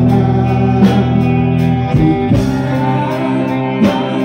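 Live rock band playing through a PA: electric guitar chords ringing over drum hits, with a male singer's voice.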